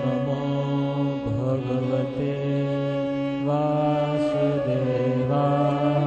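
Devotional Hindu mantra chanting with music: held, pitched tones that step to a new note every second or so.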